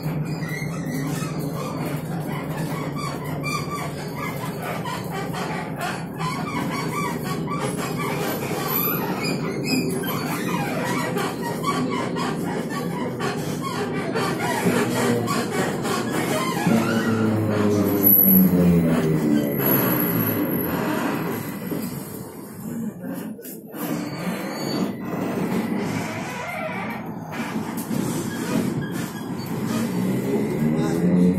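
TrolZa-62052 trolleybus heard from inside the cabin: its electric traction drive whines in several tones that glide up in pitch and fall back around the middle, and rise again near the end, over steady running and rattling noise.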